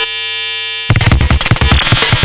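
Electronic music track: the drums and bass drop out for just under a second, leaving one steady held synthesizer tone, then the full beat with its heavy kick and bass comes back in.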